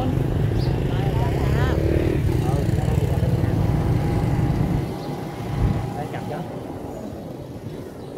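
Riding on a motorbike in town traffic: a heavy, gusty low rumble of engine and wind on the microphone, which drops off and goes quieter about five seconds in, with a single thump shortly after.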